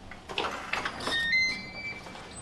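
Clicks and rustling at a front door as it is unlatched, then a short run of electronic beeps stepping up in pitch from a digital door lock.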